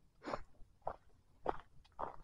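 Footsteps of a person walking on a leaf-strewn dirt forest trail: three short crunching steps a little over half a second apart.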